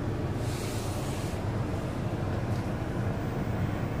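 2011 Buick Regal's 2.4-litre four-cylinder engine idling steadily, heard from inside the cabin as a low even hum. A faint brief hiss comes about half a second in.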